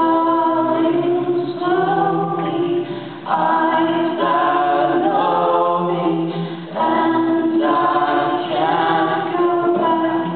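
A woman and a man singing a song together over an acoustic guitar, in three sung phrases with short breaks about 3 and 7 seconds in.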